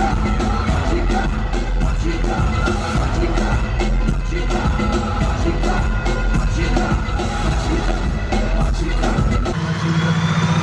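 Live concert music played loud over an arena sound system, with a heavy bass beat and singing. The deepest bass drops out near the end.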